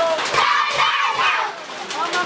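A group of children's voices singing and shouting together, with a loud shared shout through about the first second and a half that eases near the end.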